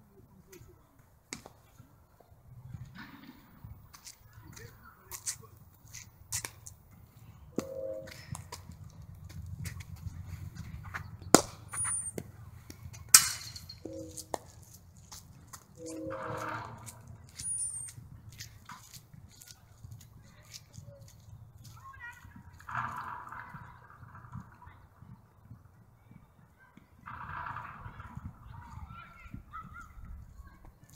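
Two sharp cracks of a cricket ball being struck, about two seconds apart, the loudest sounds here, among smaller knocks. A few short high bird chirps sound over a steady low rumble.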